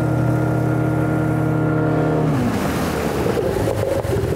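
Outboard motor of a small metal boat running at speed, with water rushing past the hull. About two seconds in, the engine's steady note drops in pitch and the rush of water and wind takes over.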